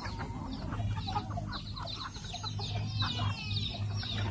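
A flock of chickens clucking, many short overlapping calls, with a low steady hum underneath from about a second in.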